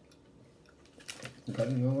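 Quiet room for about a second, a brief faint noise, then a single short spoken word, "what?", near the end.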